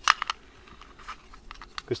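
A quick run of light clicks near the start as a small object is handled by hand, with a few fainter ticks later; the rest is faint outdoor background.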